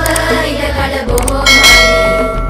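Background music with a bright bell chime that strikes about one and a half seconds in and rings on: the notification-bell sound effect of a subscribe-button animation.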